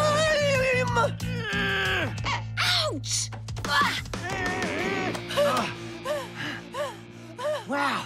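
Cartoon characters screaming in a long wavering yell, with falling glides about two seconds in, over background music that holds a steady low note; short rising-and-falling notes follow in the second half.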